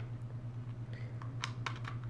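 A few faint, light plastic clicks and taps as a charging cable's plug is fitted into the port of a small plastic dashcam, over a steady low hum.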